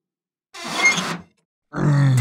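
A cartoon creature's wordless vocal sounds: a short grunt about half a second in, then a low growl starting near the end.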